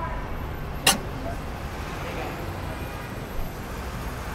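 Steady low rumble of parking-garage ambience around a parked car, with one short sharp sound about a second in.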